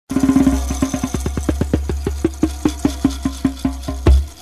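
Intro jingle of rapid pitched popping knocks over a steady low bass drone. The knocks start at about eight a second and gradually slow to about four a second.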